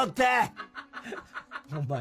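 A man's loud speech breaks off about half a second in, followed by quiet, broken snickering laughter.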